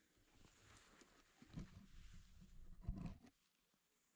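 Handling noise from a camera resting in dry grass as it is picked up and repositioned: rustling, with two dull bumps about one and a half and three seconds in.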